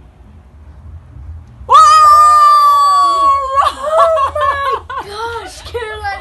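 A long, high-pitched scream starting about two seconds in and held steady for nearly two seconds, as slime is smeared onto a face, then breaking into short shrieks and laughter.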